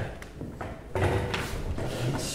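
Footsteps and a few light taps and knocks on a wooden floor as performers walk to their places and handle chairs and music stands.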